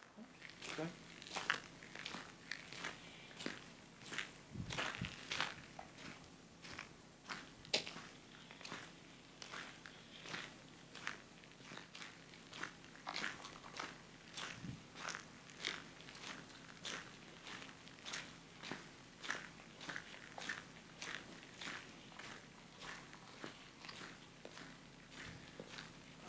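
Footsteps on a gravel road at a steady walking pace, about two steps a second.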